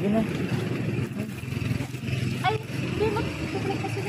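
Brief, indistinct voices over a steady background hum of street traffic.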